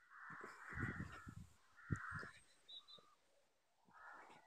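Two harsh, cawing bird calls, a longer one at the start and a shorter one about two seconds in, with low handling thuds and one sharp knock about two seconds in.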